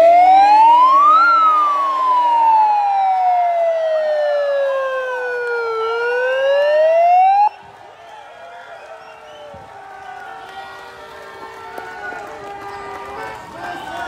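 A siren wailing: one slow sweep that climbs in pitch for about a second, falls slowly for several seconds, starts to climb again, then cuts off suddenly about halfway through. A much quieter crowd hubbub follows.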